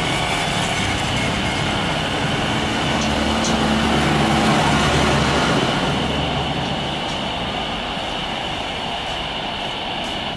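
Jet engines of a Boeing 737-500 on final approach and flare: a steady rushing noise with a high whine, swelling about four seconds in and easing off toward the end.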